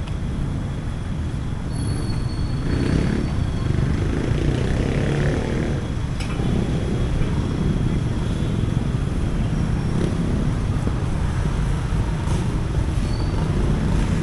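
Street traffic noise: a steady low rumble of cars and motorcycles on a busy road.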